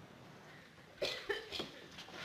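A person's short, quiet cough-like vocal sounds: three quick bursts about a second in, after a near-silent pause.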